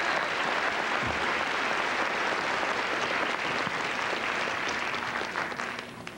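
Studio audience applauding steadily, tailing off slightly near the end.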